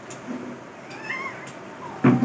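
A faint, high-pitched call that bends up and down, heard briefly about a second in, with a light click shortly after.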